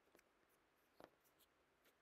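Near silence, with two faint clicks: one just after the start and one about a second in.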